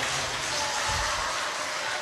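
Soft background music under a steady hiss of hall and audience noise.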